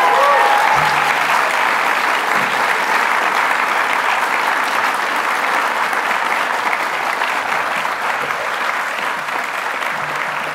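Conference audience applauding steadily, easing off slightly toward the end.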